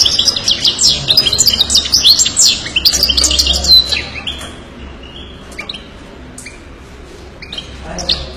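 European goldfinch singing: a quick run of twittering chirps and trills for about four seconds, then only a few scattered short calls, more quietly.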